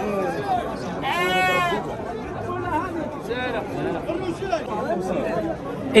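A sheep bleats once, a single call of just under a second about a second in, over continuous background chatter of many voices.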